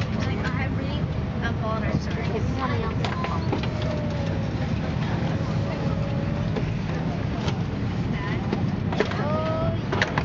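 Airliner cabin during boarding: a steady low hum of the cabin air system under the chatter of passengers' voices, with a few short knocks.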